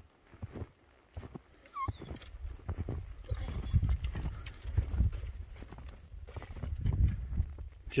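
Footsteps crunching through deep snow, about two steps a second, with a dog giving a short high whine about two seconds in. From about two and a half seconds on a low rumble, like wind or handling on the microphone, runs under the steps.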